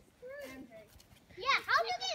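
Children's voices: a short high-pitched utterance about a quarter second in, then a louder exclamation near the end.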